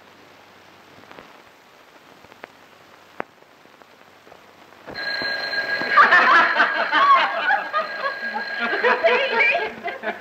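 Faint hiss with a few soft clicks, then a sudden jump about halfway in to a telephone bell ringing steadily for about five seconds, under a group's laughter and chatter.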